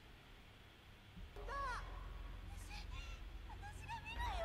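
Anime film dialogue playing: a man's high-pitched voice shouting in Japanese, starting about a second and a half in, over a low rumble.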